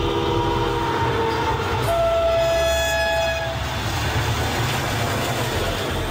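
Diesel freight train passing with a steady low rumble of wheels on rails. Its horn sounds two long blasts, the second lower in pitch.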